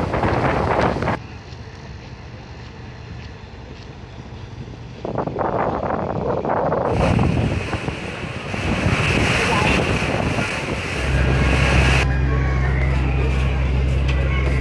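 Wind buffeting the microphone over river water, the sound changing abruptly several times. From about 11 seconds in, a steady low drone of a river launch's diesel engine comes in.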